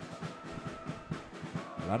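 Background music with a steady drumbeat, about four beats a second, under a few held tones.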